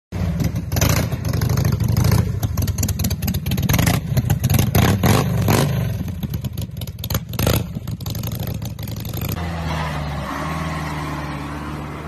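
Engine of an old Lada sedan built onto a multi-wheeled chassis, running and revving with clattering knocks. About nine seconds in, the sound changes to a steadier engine hum.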